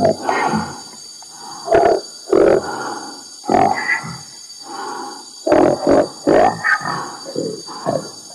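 A DJ mix playing irregular bursts of growling, voice-like sounds, about a dozen of them, with no steady beat.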